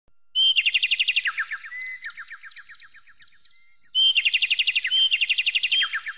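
A songbird singing two phrases, each a fast trill of many short notes that steps down in pitch. The first starts about half a second in and fades over the next few seconds. The second starts about four seconds in.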